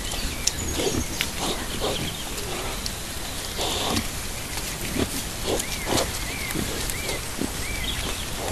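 Wild boars rooting in mud, giving short, scattered low grunts and snuffles over a steady hiss.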